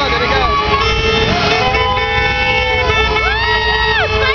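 Can-Am Spyder three-wheeled roadsters running at parade pace with a low engine rumble. From about a second in, long steady horn tones sound over them and stop near the end.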